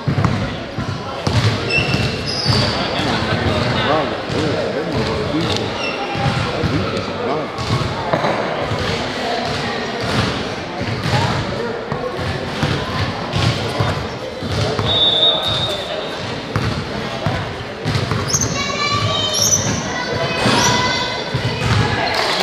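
A basketball bouncing repeatedly on an indoor court during a game, under steady spectator chatter echoing in a large gym. Short high squeaks come through now and then, most of them about eighteen to twenty seconds in.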